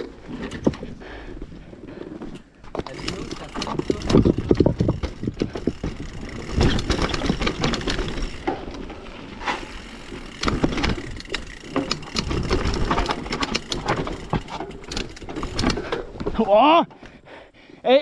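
Mountain bike clattering down a rock garden: tyres knocking on stone, with chain and suspension rattling in uneven bursts. A voice starts near the end.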